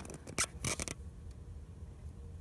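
Handling noise: a quick run of sharp clicks and taps in the first second, then a faint steady low hum.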